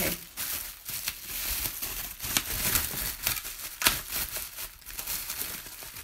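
Plastic bubble wrap packaging crinkling and crackling as it is handled and pulled out of the shipping box, in a quick irregular run of small crackles.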